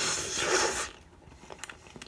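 Someone eating instant noodles from a saucepan with a fork: a noisy rush lasting about a second, then a few faint clicks.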